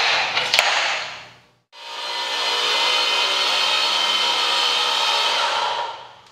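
A few sharp metallic clicks and a knock as a pin is set into the clamp block of an AGP DB32 digital tube bender. After a brief gap, the bender's 1700 W electric motor runs steadily for about four seconds, drawing a copper tube around the bending former, then stops near the end.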